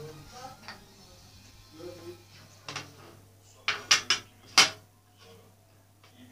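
Dishes clinking and knocking as they are set down: a few sharp hard knocks, then a quick run of three about four seconds in and a loudest one just after.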